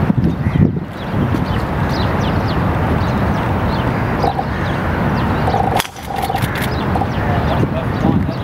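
Outdoor golf-course ambience: a steady background hum with distant murmuring voices and frequent short bird chirps. A quick run of sharp clicks comes about six seconds in, around the golfer's tee shot.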